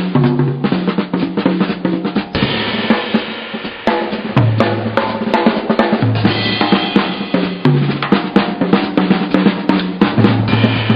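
Two jazz drum kits played together: busy snare, bass drum and tom strokes with ringing cymbals. Underneath them runs a bass line of held low notes that change pitch every second or two.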